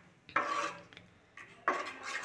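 Silicone spatula stirring thin gram-flour and buttermilk batter in a non-stick kadhai: two soft scraping strokes against the pan, one about half a second in and another near the end.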